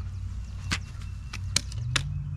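Clamps being released and taken off a repaired marble grave marker: four sharp clicks and knocks over about a second and a half, over a steady low rumble.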